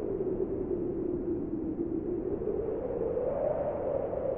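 A steady, wind-like noisy drone with no clear pitch, its centre slowly wavering and rising a little near the end. It is the atmospheric intro to the music track, before any instrument plays.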